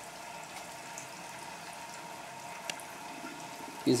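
Steady hiss of liquid boiling and running inside a working 6 kW stainless-steel continuous stripping still, with one small tick a little under three seconds in.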